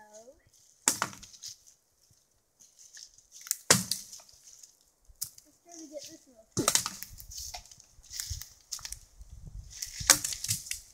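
Wooden stick striking a tree: two sharp cracks about three seconds apart, then a run of knocks and crackling wood over the last few seconds.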